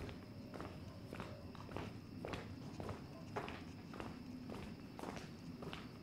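Footsteps of two women walking on hard pavement, heeled shoes clicking about twice a second in a steady rhythm with fainter steps in between.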